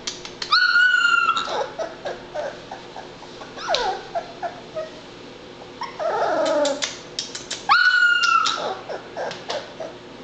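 Labrador Retriever puppy whimpering and crying in high squeals that fall in pitch, the loudest cries about half a second in and again near eight seconds, with a run of shorter squeaks around six to seven seconds and small ones in between.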